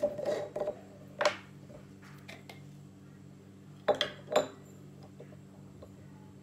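Metal screw lids being twisted off spice jars and set down on a hard table. There is scraping and handling in the first second, a click, and then a quick run of sharp metal-and-glass clicks and clinks about four seconds in, the last one ringing briefly.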